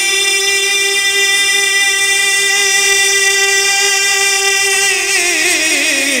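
A male naat reciter's voice holding one long, steady note for about five seconds, then sliding down in pitch with a wavering ornament near the end.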